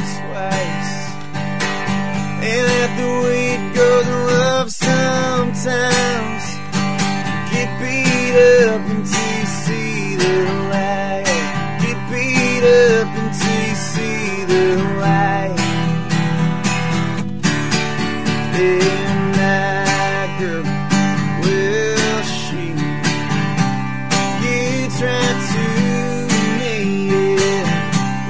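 A man singing a country song live to his own strummed Taylor acoustic guitar.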